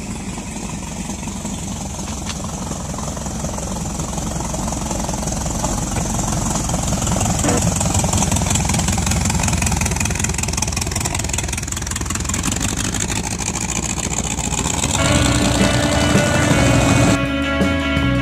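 Hot rod's V8 engine running, a fast even run of exhaust pulses that slowly grows louder. Music comes in about fifteen seconds in.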